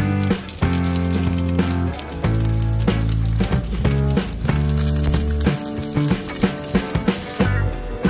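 Meat patty sizzling in a small seasoned iron frying pan, with a steady frying hiss that fades near the end, over background music with a held bass line.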